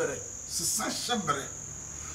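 A man speaking a few short words over a steady high-pitched tone that runs unbroken throughout.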